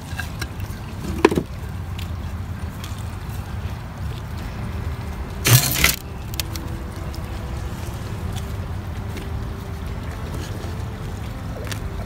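Hands working gritty potting soil around a plant's base in a bonsai pot, soft rustling and crunching with one louder scrape about halfway through, over a steady low rumble.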